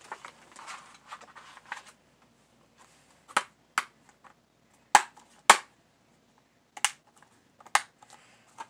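A plastic DVD case being handled: a soft rustle of its paper inserts, then a series of sharp plastic clicks and snaps as the case is worked shut, the loudest two about five seconds in.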